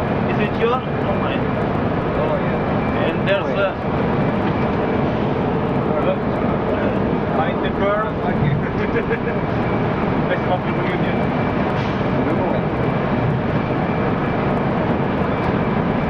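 Steady engine and road noise of a moving bus, heard from inside near the driver's cab, with people talking over it.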